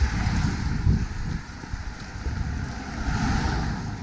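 Wind buffeting a handheld camera's microphone while running, a gusty low rumble that is strongest at the start and about a second in.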